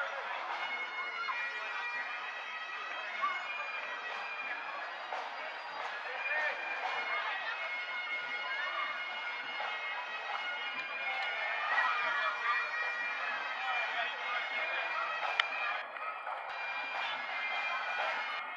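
Bagpipes playing, with people's voices from a parade crowd mixed in.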